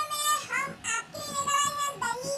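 A high, child-like voice singing a melody in sustained notes.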